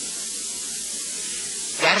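Steady hiss of recording noise with no other sound; a man's speaking voice returns near the end.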